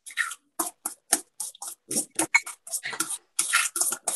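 Thick sweet-potato batter being stirred and scraped in a glass bowl with a utensil: a fast, uneven run of short scraping, clacking strokes, about four a second.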